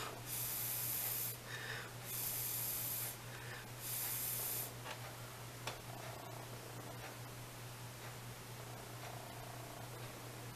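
Three puffs of breath, each about a second long, blown onto nail polish floating on a cup of water to dry the film before the nail is dipped.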